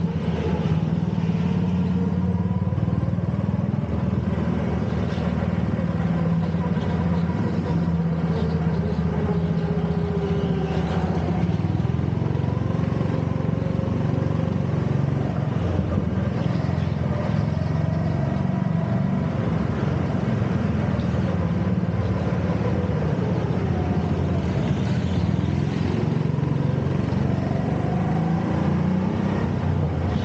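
Rental go-kart driving at speed, heard from onboard. Its engine note runs throughout and rises and falls as the kart speeds up on the straights and slows for the corners.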